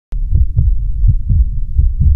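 Deep, low thumping pulses over a low rumble, about three or four thumps a second, starting abruptly after a short silence.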